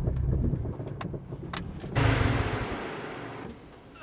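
Subaru Impreza's flat-four engine running, heard from inside the cabin, stops under a second in. A couple of clicks follow, then about two seconds in a sudden burst of hiss that fades away over a second and a half.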